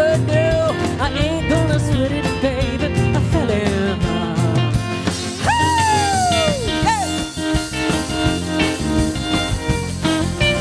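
A live band plays an instrumental break, led by an electric guitar on a Telecaster-style instrument, with bent, wavering notes over bass and drums. About halfway through, one long guitar note slides slowly downward.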